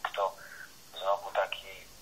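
Speech only: a voice talking in short phrases, with a thin, narrow telephone-like sound that lacks both bass and treble.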